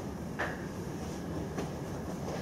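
Steady low room noise in a lecture room, with a faint brief click about half a second in and another faint tick near the end.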